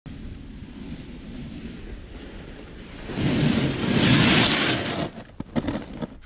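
Wind noise on the microphone, then a louder scraping rush of a snowboard sliding over snow up to the camera about three seconds in, followed by a few short knocks as the rider settles onto the snow.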